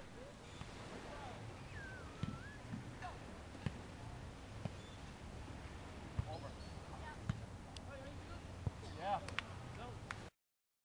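Beach volleyball game: sharp thumps of the ball being struck every second or so, with distant voices calling over a steady low rumble.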